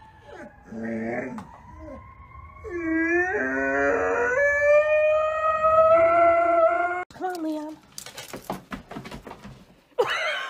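Golden retriever howling with a tennis ball in its mouth. A short low grumble comes about a second in, then a rising, wavering howl that settles into one long held note and breaks off sharply a few seconds later. A few short clicks and rustles follow.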